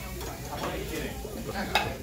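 Saganaki cheese sizzling in hot metal serving pans, with a sharp metallic clink about three-quarters of the way in.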